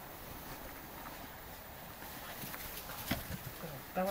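Quiet, then a few knocks in the second half: a horse's hooves stepping.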